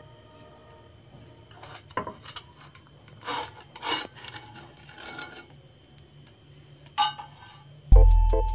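A spatula scraping and rubbing against a non-stick frying pan in several short strokes as a cooked bread pizza is slid out onto a plate.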